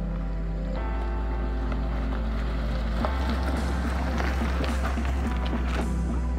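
Background music with sustained bass chords that change about a second in and again about three seconds in.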